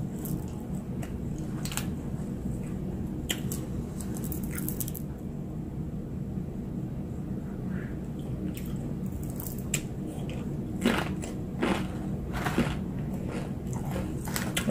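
Close-up chewing of a tortilla chip loaded with spinach artichoke dip: scattered short, crisp crunches with wet, squishy chewing between them. A steady low hum runs underneath.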